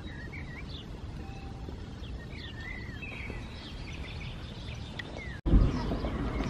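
Birds chirping and singing over a steady low outdoor rumble. About five and a half seconds in, the sound drops out for an instant and a louder low rumble takes over.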